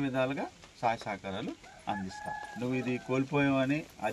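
A rooster crowing about two seconds in, over men's voices talking.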